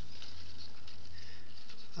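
Soft rustling of lettuce leaves being handled, over a steady low hum.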